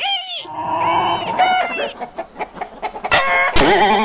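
Bird calls: a run of short, overlapping clucking calls, louder about three seconds in.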